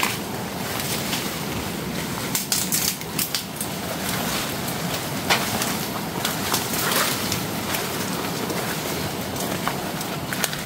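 Footsteps on a forest path and the brushing of bodies through dry banana leaves and undergrowth, with sharp crackles and snaps of dry leaves, most of them between about two and three and a half seconds in.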